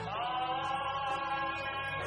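Worship team singing a hallelujah line in Korean with acoustic guitar accompaniment: the voices slide up into one long held note near the start and sustain it.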